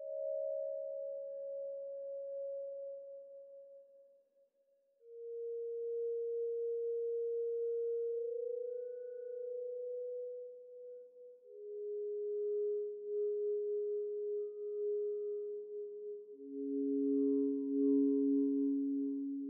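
Background music of slow, sustained pure electronic tones, one or two at a time, each held for several seconds before moving to a new pitch, with a brief gap about four seconds in and a lower tone joining near the end.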